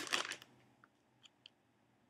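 Potato chip bag crinkling as it is handled and raised, a dense crackle in the first half second, then a few faint soft crackles.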